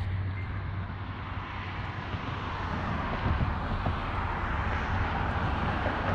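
Steady rushing noise with a low hum underneath, swelling a little in the second half, like traffic or wind on an outdoor microphone.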